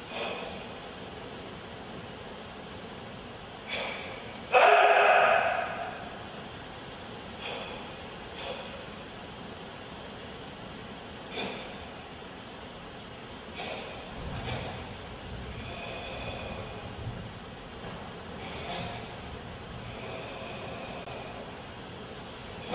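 A karateka's forceful breaths and sharp exhalations punctuating each technique of a kata, every one to three seconds. One much louder burst comes about four and a half seconds in and dies away in the hall.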